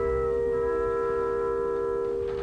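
Opera orchestra holding a single sustained chord that comes in sharply and stays steady without a change of pitch.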